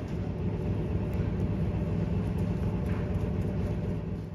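A steady low mechanical rumble with a faint even hum, like an engine running.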